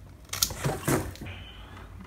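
Bypass pruning shears snipping through a dwarf jade's (Portulacaria afra) succulent stem: two sharp clicks about half a second apart, the first about half a second in.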